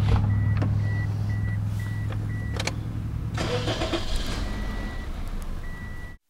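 A 2007 Toyota Corolla's 1.8-litre four-cylinder engine running with a steady low hum, with the number one spark plug replaced by a pressure transducer and that cylinder's injector unplugged. Over it the car's warning chime beeps in short regular tones, about two a second, then in longer tones near the end, with a couple of clicks and a brief rustle.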